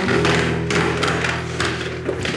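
Footsteps going quickly down wooden stairs, with a suitcase being carried: a series of wooden thumps about twice a second, over sustained background music.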